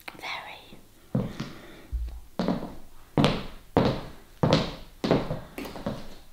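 High-heeled shoes clicking on a hard tiled floor: about seven steps, a little over one a second, each with a short room echo, with a deeper thud about two seconds in.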